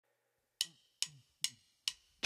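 Four evenly spaced wooden clicks, about two and a half a second: a drummer's stick count-in setting the tempo for the band.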